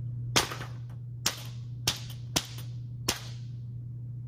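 Two metal balls struck together by hand through a sheet of paper, five sharp cracks at uneven intervals, the first the loudest. Each collision punches a hole through the paper, with enough heat to leave a smell of smoke.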